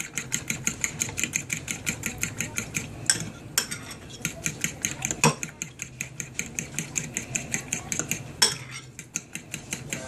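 A metal fork whisking beaten eggs in a small glass bowl, clinking against the glass in a fast, even rhythm of about six strikes a second, with a few louder knocks about three and a half, five and eight and a half seconds in.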